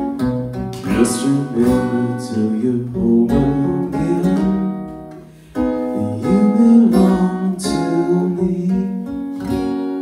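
Acoustic guitar strummed in slow, ringing chords; the playing thins out about five seconds in, then picks up again with fresh strums.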